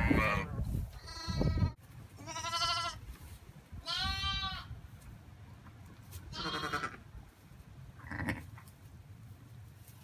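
Newborn lambs bleating: about six short, high, quavering bleats, roughly a second or two apart, growing fainter after the first few. A low rumble sits under the first two bleats.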